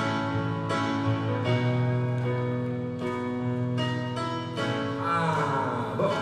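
Live stage keyboard playing a slow song intro: sustained chords and notes, a new one struck about every three quarters of a second and ringing over the last.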